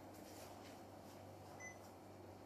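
Near silence: room tone with a steady low hum, and one short faint beep about one and a half seconds in.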